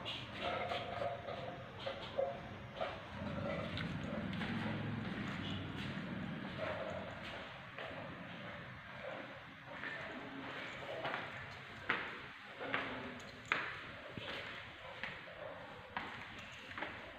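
Footsteps on hard stair treads, with a few sharper knocks of steps under a second apart near the end, over faint background voices.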